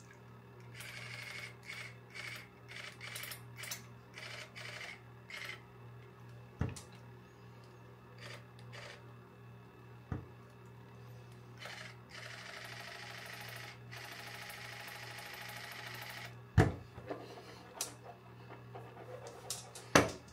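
Cordless water flosser spraying against the teeth: a hiss that comes in short spurts for the first several seconds, then runs steadily for a few seconds near the end. A few sharp knocks fall between, over a low steady hum.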